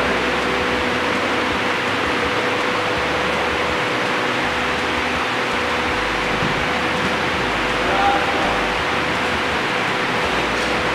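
A steady, even rushing noise with a faint steady hum under it, like a large fan or air handler running.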